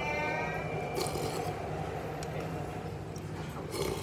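Soup slurped from a ceramic spoon near the end, with a shorter slurp-like noise about a second in, over a steady restaurant hum. A brief pitched vocal sound at the very start.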